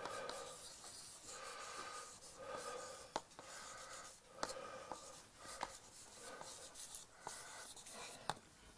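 Chalk writing on a blackboard: faint, scratchy strokes in short runs with brief gaps, and a few sharp taps as the chalk strikes the board.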